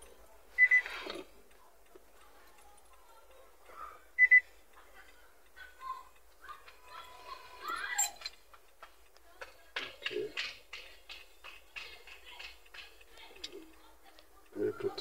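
Two short double electronic beeps, the first about a second in and the second about three and a half seconds later, during smart-key learning. Light clicks and taps follow near the end.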